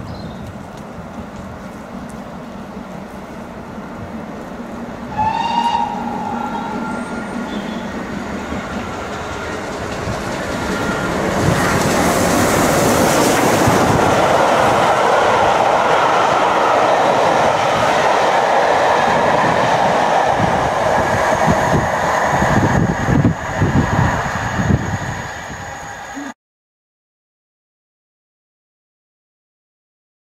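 GWR Castle Class 4-6-0 steam locomotive 5043 and its coaches running through at speed. A short whistle blast comes about five seconds in, then a rising rush of noise as the engine and coaches pass close by, with wheels clicking over rail joints near the end before the sound cuts off suddenly.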